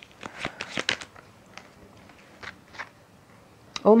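Tarot cards being shuffled and handled: a quick flurry of card snaps in the first second, then a few single soft clicks.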